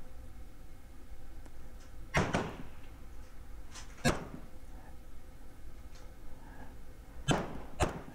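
Three rifle shots from an M1 Garand in prone rapid fire, spaced about two and three seconds apart, each a sharp report with a short echo.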